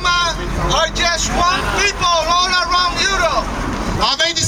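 A man speaking into a microphone, amplified through a portable loudspeaker, over a low steady rumble of road traffic.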